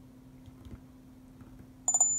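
Quiet room tone with a faint steady low hum. Just before the end, a short click and a thin high tone start.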